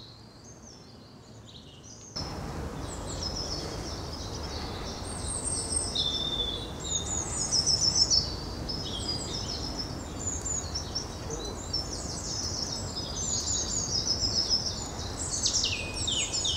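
Small songbirds chirping and singing, with many short high phrases overlapping. The song is sparse for the first two seconds and becomes a busy chorus after that, over a steady low background rush.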